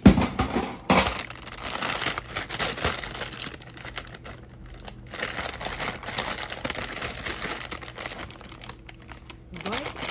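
Paper towel being crumpled and handled on a tabletop: a continuous crinkling rustle, with two sharp knocks at the start and about a second in.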